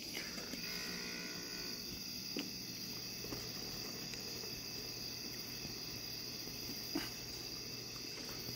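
Steady night-time insect chorus, a continuous high-pitched trill, with a low steady hum underneath and a couple of faint clicks.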